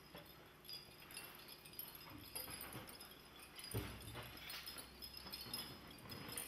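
Faint rustling of a large cloth sheet as a person shifts underneath it on a wooden stage floor, with a soft thump on the floor a little past halfway.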